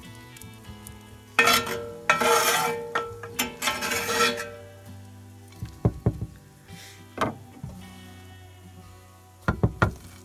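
Metal spatula scraping sautéed mushrooms and onions off its blade onto a burger for about three seconds, then a few short clicks and taps against the plate. Quiet background music plays underneath.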